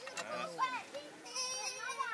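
People talking in Thai, among them a high-pitched voice like a child's.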